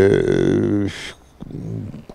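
A man's low voice holding one drawn-out vowel sound for just under a second, then a brief hiss and quieter voice.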